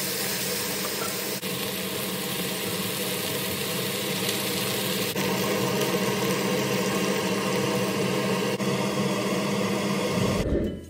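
Chicken, onion and potatoes sizzling in a hot wok, with a steady mechanical hum underneath; the sound shifts slightly at a couple of cuts between shots.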